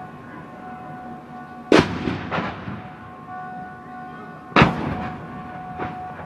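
Two mortar rounds exploding, about three seconds apart, each a sharp blast followed by a rolling echo. A faint steady tone sounds underneath throughout.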